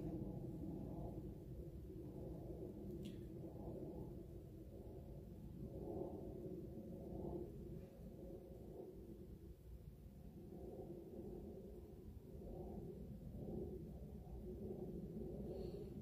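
Faint low rumble of outdoor background with a hum that swells and fades, and a faint click about three seconds in.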